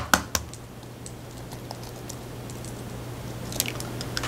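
An egg being cracked on the rim of a bowl: a few sharp taps right at the start, then faint crackling as the eggshell is pried apart near the end, over a steady low hum.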